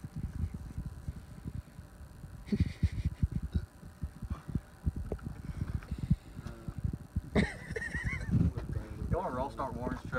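Wind rumbling on the microphone, with men's voices yelling and laughing in wavering shouts in the last few seconds.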